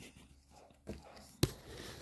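Faint rustle of football trading cards being sorted through by hand, with one sharp click about one and a half seconds in.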